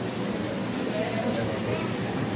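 Quiet speech with the words not clear, softer than the sermon around it.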